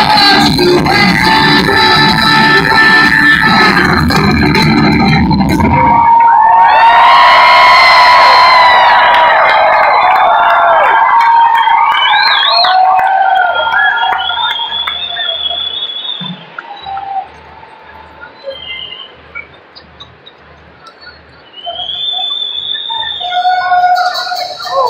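Live rock band playing loud through the PA, with heavy bass and drums, until the song cuts off about six seconds in. Sustained ringing notes hang and fade over the next few seconds, followed by quieter crowd noise with whistles and a soft low thump repeating about twice a second.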